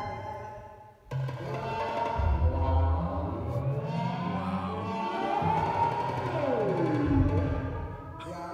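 Electronic synthesizer music played by touch on an iPad. A sound fades away, then about a second in a new layered chord enters suddenly with deep bass notes, and near the end a high tone glides down in pitch.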